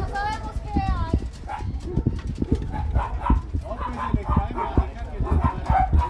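Several dogs in a truck's cargo bed whining in the first second, then barking and yelping repeatedly. People's voices are mixed in, over a steady low rumble.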